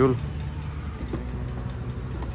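Royal Enfield Bullet's single-cylinder engine idling steadily during refuelling, a low even hum.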